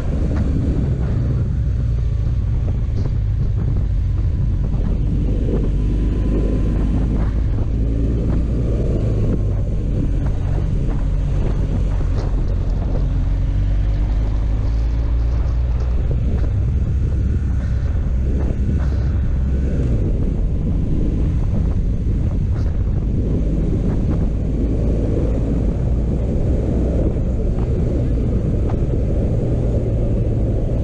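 Motorcycle engine running at road speed, its pitch drifting up and down with the throttle, under a steady heavy wind rumble on the microphone.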